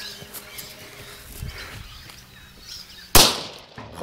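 A firework explodes with one sharp, loud bang about three seconds in, blowing apart the honeydew melon it was set in.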